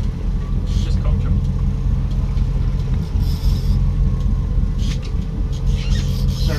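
Boat engine running steadily under way, a constant low drone.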